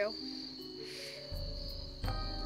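A steady, high-pitched cricket trill over soft background music, with a low rumble coming in past halfway.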